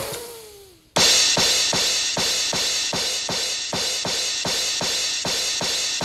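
A pair of hand cymbals crashed together over and over, about three to four crashes a second, their ringing piling up into one continuous clashing wash. It starts suddenly about a second in, after a brief falling tone.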